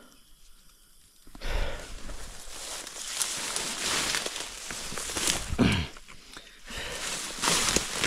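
Tall grass and brush rustling and swishing against the body and camera as someone pushes through dense vegetation on foot, with footsteps; it starts after a second or so of quiet and pauses briefly near the end.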